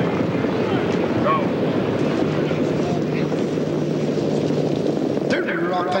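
Dense grandstand crowd noise at a harness racetrack as the field comes to the start, with a steady low engine-like hum in the middle seconds.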